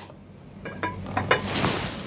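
A few faint clinks and knocks as an upturned clear glass is handled and lifted off a plate standing in water.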